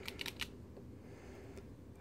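A few quick, light clicks in the first half second from a Canon FD 50mm f/1.8 lens being worked by hand, its aperture ring and stop-down lever moving the aperture, followed by faint handling rustle.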